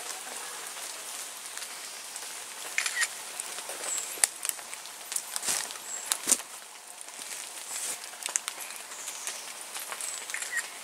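Footsteps crunching and snapping over leaf litter and twigs, a few sharp cracks standing out midway, against a steady outdoor hiss, with a few short bird chirps.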